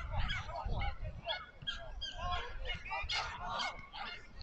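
A flock of geese honking, many short calls overlapping, several a second.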